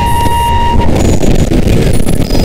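Harsh noise music: a loud, dense wall of distorted noise, with a steady high tone held through about the first second.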